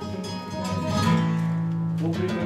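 Flamenco guitar playing: strummed chords ring on, and a low bass note is held under them from about halfway through.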